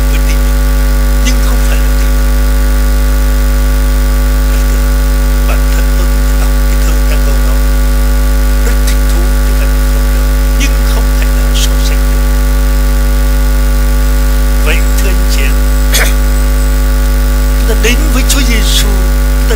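Loud, steady electrical mains hum and buzz: a low drone with a stack of steady higher tones above it, with a few faint clicks.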